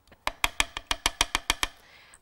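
A wooden spoon tapped quickly against a ceramic bowl: a dozen or so sharp, even knocks, about eight a second, stopping shortly before the end.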